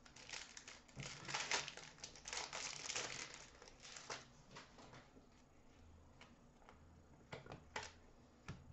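Card-pack wrapper crinkling and trading cards rustling in hand for the first few seconds, then quieter, with a few light clicks near the end as cards are set down.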